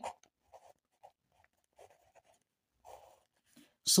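A ballpoint pen writing a word on paper: several short, faint scratching strokes.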